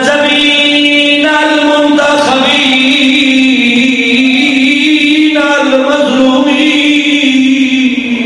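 A man chanting in long, drawn-out held notes, in the melodic style of Arabic religious recitation. His voice glides gently up and down in pitch, with a slight break a little after a second in and again after five seconds.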